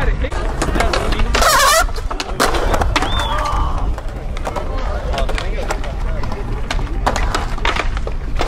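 Skateboard wheels rolling on concrete with a steady low rumble, broken by several sharp clacks of boards hitting the ground. Voices shout from the park around it.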